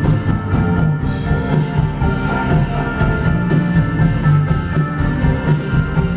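Live instrumental rock trio playing: drum kit with a cymbal struck about twice a second, electric bass holding low notes, and keyboards sustaining chords.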